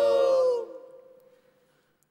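Final held note of a song, sung by a male voice and a choir over accompaniment, sliding slightly down in pitch and cutting off about half a second in. A reverberant tail then dies away to near silence.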